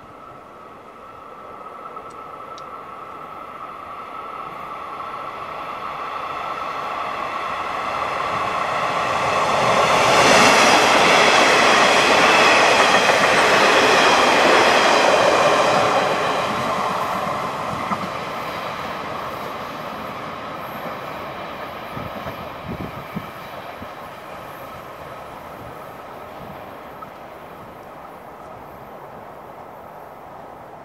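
A train passing close by: its rumble and wheel noise grow over about ten seconds, are loudest from about ten to sixteen seconds in with high ringing tones from the wheels and rails, then fade slowly as it moves away.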